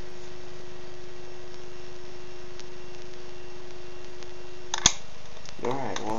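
Radio Shack 100-watt soldering gun switched on, its transformer giving a steady hum while it heats the wire joints. The hum cuts off with a sharp click about five seconds in.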